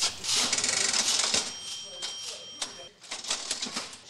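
Rapid mechanical clicking and clattering from the counter mechanism of a lever voting machine being worked on, with a steady high tone lasting about a second in the middle.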